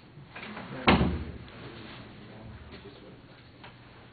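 A single sharp thump about a second in, dying away over about half a second, in a quiet classroom.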